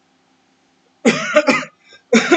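A man coughing: two quick coughs close together, about a second in.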